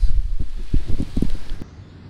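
Wind buffeting the microphone, with a low rumble and a few light rustles or handling knocks. It cuts off abruptly near the end, leaving a much quieter background.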